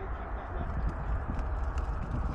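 Wind rushing over the camera microphone on a paraglider in flight: a steady low rumble with irregular buffeting and faint ticks.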